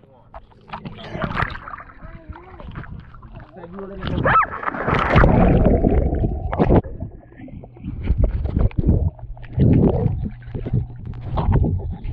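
Pool water splashing and bubbling around an action camera as it goes from the surface to underwater, with a loud rush of bubbles and water from about four to seven seconds in. Muffled voices come and go.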